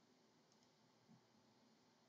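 Near silence: room tone, with a faint computer-mouse click about half a second in.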